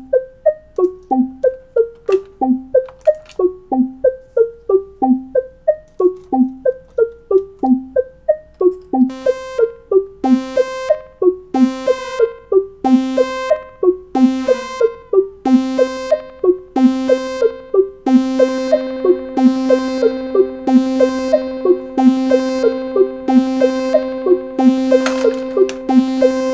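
Eurorack modular synthesizer patch playing short, repeating plucked saw-wave notes, about three a second, each with a quick filter sweep, clocked through a clock divider/multiplier and sent through a delay. About nine seconds in the notes turn brighter, and from about sixteen seconds a steady held tone builds beneath them.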